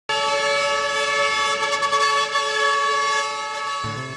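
A vehicle horn sounding one long, steady multi-tone blast, cut off abruptly just before music begins.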